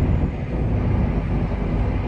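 Heavy truck's diesel engine running, with tyre and road noise, heard from inside the cab while driving: a steady low drone.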